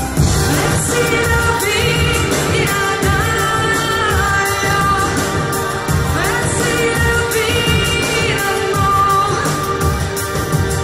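Live electronic pop band playing through a PA, a woman singing sustained, gliding lines over a steady beat and keyboards.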